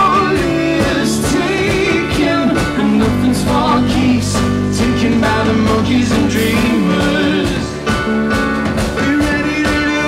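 Live rock band playing: a man singing lead over keyboard and a drum kit with cymbals.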